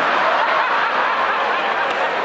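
A large audience laughing together, a steady mass of laughter with no single voice standing out.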